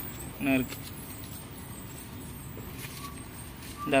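A single spoken word about half a second in, then a steady low background rumble.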